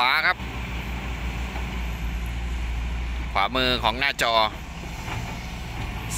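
Crawler excavators' diesel engines running with a steady low drone while they dig in mud.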